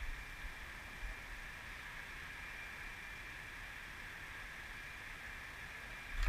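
Faint, steady background ambience: an even hiss with a low rumble and a thin steady high tone, and one small tick about a second in.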